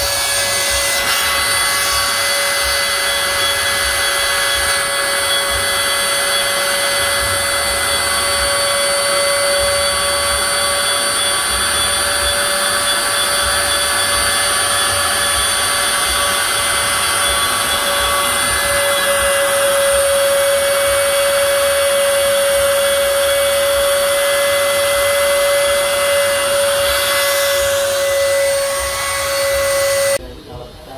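Wood-trimmer spindle of a four-axis CNC router running at steady high speed, a constant whine over a hiss of cutting, as the bit carves a wooden cylinder turned on the rotary axis.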